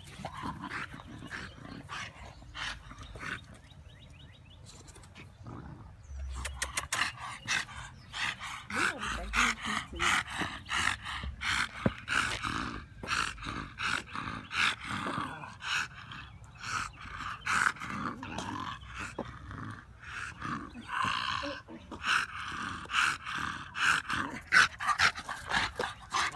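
Bully-breed dog barking and growling over and over in rough play, the sounds coming quick and close together from about six seconds in.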